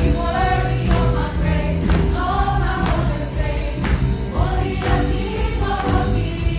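Live worship band with several singers performing a praise song, with tambourines struck in time about once a second.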